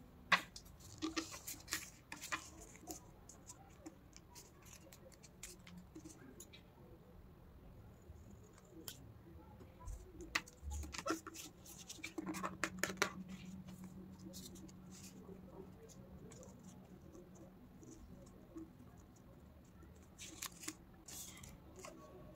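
Faint, scattered rustles and crackles of paper being handled, pressed and creased into folds, in short clusters with quiet gaps between.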